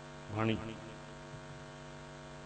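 Steady electrical mains hum from the microphone's sound system, a stack of even tones, with one short word from a man's voice about half a second in.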